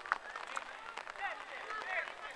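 Players' voices shouting and calling across an outdoor football pitch, several short calls overlapping, with a single sharp knock just after the start.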